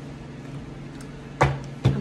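Tarot card deck being handled: two sharp knocks about half a second apart near the end, over a steady low hum.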